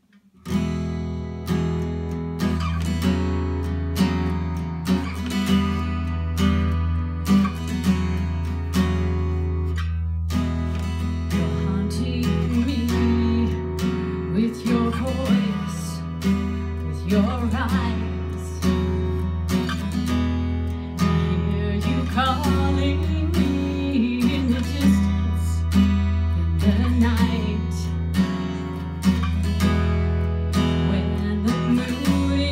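Acoustic guitar strummed steadily as the opening of a song, its low strings ringing on without a break.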